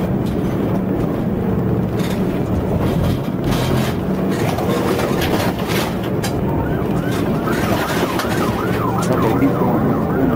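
Steady road and engine noise from a car driving at highway speed, joined about six and a half seconds in by a police siren's rapid rising-and-falling yelp, several sweeps a second.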